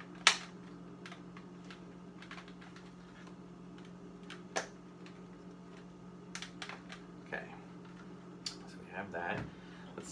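Hard plastic clicks and knocks from a Darth Vader helmet replica's pieces being handled and fitted together, with one sharp knock just after the start and scattered lighter clicks later, over a steady low hum.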